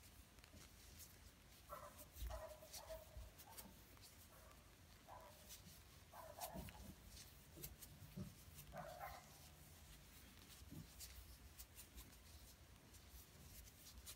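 Near silence: faint rustling and small ticks of a plastic crochet hook pulling thick T-shirt yarn through stitches, with several faint short whines in the first two-thirds.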